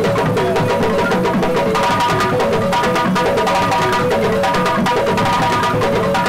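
Several balafons, wooden xylophones with gourd resonators, played together with rapid mallet strikes in a steady, dense pattern, backed by a djembe hand drum.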